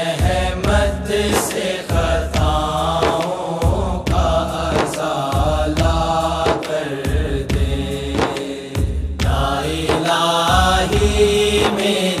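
Instrumental interlude of an Urdu devotional dua (naat-style): wordless chanted vocals held and gliding over a steady beat of hand drums.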